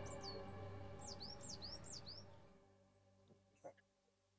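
Background music fading out under birds chirping, a string of quick chirps that each fall in pitch during the first two seconds. After that there is near silence with a couple of faint clicks.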